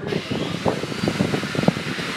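Steady rushing air noise that starts abruptly, with irregular low knocks and rustles.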